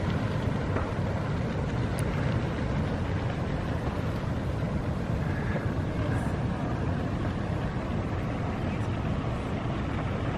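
Steady wind rumbling on the microphone, a constant low noise with no distinct events.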